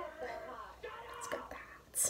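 Soft, quiet speech.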